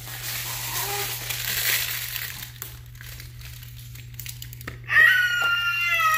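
Crinkling and rustling of the plastic and paper wrapping of a toy mystery egg being handled and torn, with a few sharp clicks of the plastic pieces. Near the end a loud, high-pitched held call starts and stays on one steady pitch.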